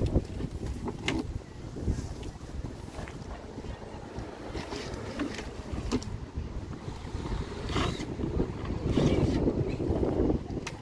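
Wind rumbling on the microphone, with several short knocks spread through it as a large wooden board is worked loose from a clapboard wall.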